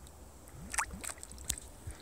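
Low wind rumble on the microphone with a few faint clicks.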